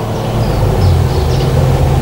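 A steady low hum with no speech: the background noise of an old analogue video recording.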